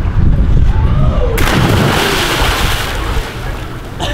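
A low rumble, then about a second and a half in a person plunges into a swimming pool with a loud splash. The spray hisses and dies away over about a second and a half.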